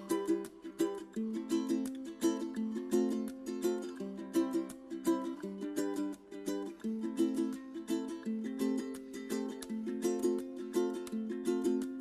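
Background music: a ukulele plucking a gentle, steady repeating pattern of notes, with no singing.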